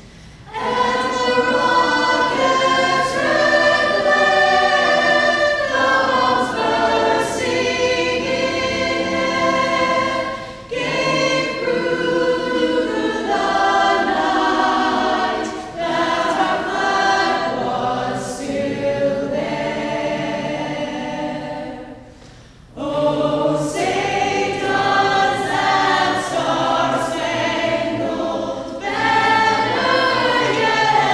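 A mixed high-school choir singing together in parts, with one brief break in the singing about three-quarters of the way through.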